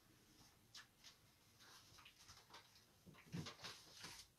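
Near silence: room tone with faint scattered rustles and light knocks from people moving about, a little louder near the end.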